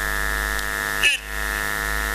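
Steady electrical buzzing hum with many evenly spaced overtones, unchanging in pitch and level. A short voice sound breaks in about a second in.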